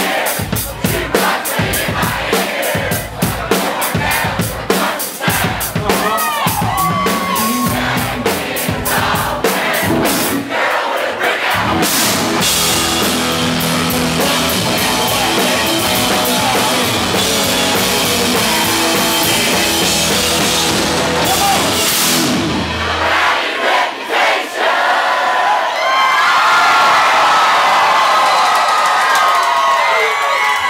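Live country-rock band closing out a song with the crowd singing along: drums hitting fast and hard at first, then a long held final chord that stops abruptly about three-quarters of the way through. The crowd then cheers and shouts.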